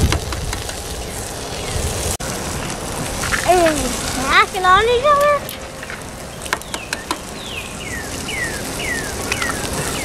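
Steady sizzle of food cooking on a tabletop propane griddle, with a few light clicks of utensils. About midway a wordless voice rises and falls, and near the end a bird whistles a run of about five falling notes.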